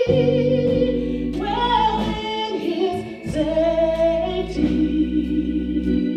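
A woman singing a gospel song into a microphone, holding long notes, over sustained organ chords.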